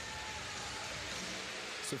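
Steady, even background noise of a crowd in a large swimming arena, with no distinct events.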